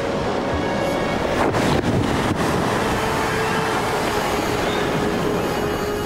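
Sea water surging and splashing, with a few sharp splashes about one and a half to two and a half seconds in. A held note of background music sounds underneath.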